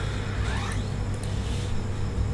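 Steady low hum with an even hiss underneath: background noise on the recording, with no distinct event.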